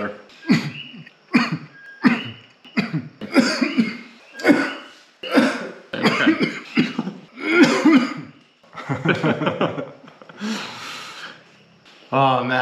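A man coughing repeatedly, a fit of short coughs about one a second, with some throat clearing.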